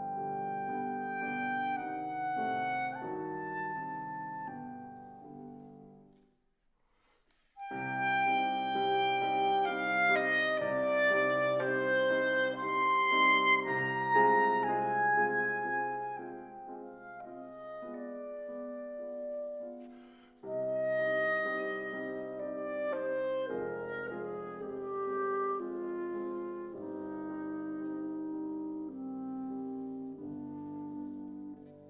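Clarinet and grand piano playing classical chamber music. The music fades to a brief silence about six seconds in, comes back loud a second later, and dips briefly again near twenty seconds before going on.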